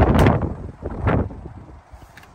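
Wind buffeting and rustling on a handheld phone's microphone as it is carried, loudest in the first half second, with another gust about a second in, then dying down.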